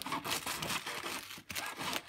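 Kitchen knife cutting down into a raw white cabbage head beside its core, the crisp leaves crunching and splitting under the blade in a dense run of small crackles.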